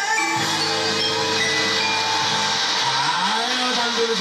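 Live stage band music with long held notes, closing out a contestant's song.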